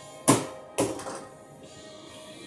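Two sharp snaps about half a second apart, the first the louder, as hands work a circuit breaker loose in an electrical breaker panel.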